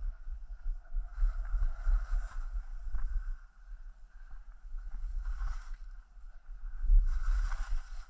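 Skis hissing and scraping over chopped-up snow through a series of turns, swelling three times, about a second in, past the middle and near the end. A low rumble of wind buffets the camera microphone throughout.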